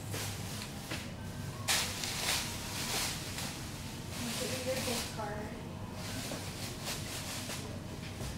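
Faint, indistinct voices with soft rustling and brushing noises from hands working hair on a fly-tying vise.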